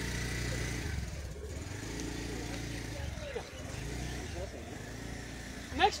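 Steady low rumble of a motor vehicle engine running, with faint voices over it.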